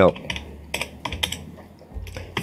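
Typing on a computer keyboard: a run of irregular key clicks.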